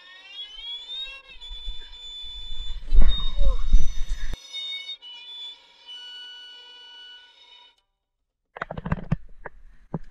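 An electronic sting of several sustained tones rises in pitch over the first second, then holds as a steady chord and cuts off suddenly about three-quarters of the way through. A loud low rumble breaks over it for about a second near the middle. Near the end come rough rumbling knocks.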